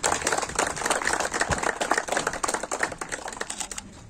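A small crowd applauding: dense, irregular clapping that stops about four seconds in.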